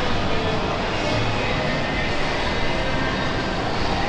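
Steady ambience of a large shopping-mall atrium: an even, continuous roar of noise with no distinct events.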